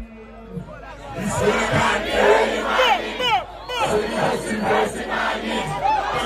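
Large concert crowd shouting and cheering, many voices at once with short falling yells. It swells loud about a second in, just after the music's bass drops out.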